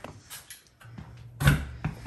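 Handling noise as a phone camera is picked up and carried: a few light knocks and one dull thump about one and a half seconds in.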